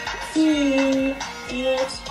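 Background song: a sung melody of long, wavering held notes over instrumental accompaniment.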